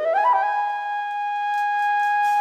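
A flute plays alone: a quick rising run of notes, then one long high note held steady.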